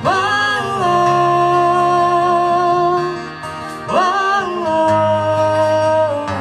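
Live country music: two acoustic guitars played under two long held sung notes, each scooping up into pitch as it starts, the second about four seconds in.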